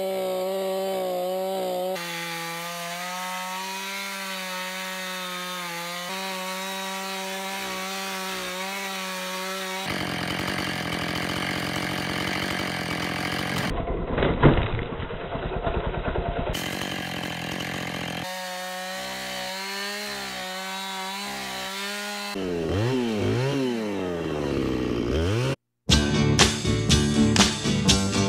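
Gas chainsaw running at high revs while cutting into a felled tree trunk, its engine note jumping abruptly every few seconds. Near the end the engine pitch swings up and down, then stops suddenly.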